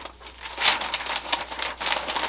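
Sheet of packing paper rustling and crinkling as it is folded around a knit sweater, in a run of short crackly bursts.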